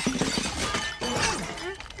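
Cartoon crash of dishes and food sliding off a tipped buffet table: a rapid run of clattering, smashing crockery impacts.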